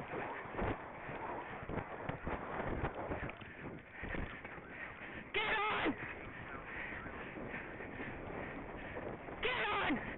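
Horse cantering across grass: uneven hoofbeats and rushing noise. About halfway through and again near the end come two short, high, wavering voice calls, the second falling in pitch.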